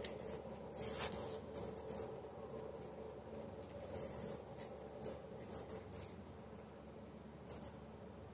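Rolls of dimes being handled: paper coin wrappers rubbing and rustling, with scattered light clicks of coins, clustered about a second in and again around four to six seconds. Faint and muffled.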